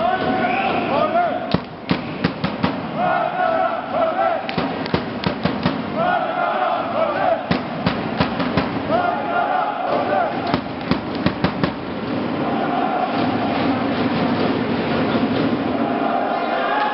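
Supporters in a sports hall chanting, a short sung phrase repeated about every three seconds, with many sharp bangs scattered through the middle.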